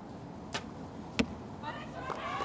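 A compound bow shot: a sharp snap as the arrow is released about half a second in, then a louder knock a little over half a second later as the arrow strikes the target.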